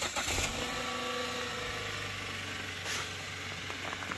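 Opel Insignia engine idling steadily just after a cold start in sub-zero weather, warming up after standing unused for two days.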